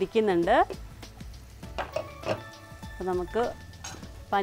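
A woman's voice briefly at the start and again about three seconds in, over soft background music, with a few light clicks in between.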